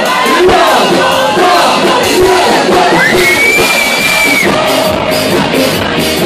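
Loud live concert music over a club sound system, with the crowd shouting and singing along. About three seconds in, a high whistle rises and holds for about a second and a half.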